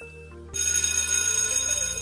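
A countdown chime fading out, then about half a second in an electronic ringing-bell sound effect starts and holds, signalling that the quiz timer has run out; background music plays underneath.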